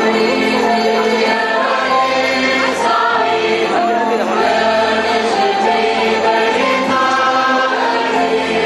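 A mixed choir of young men and women singing together, holding sustained chords.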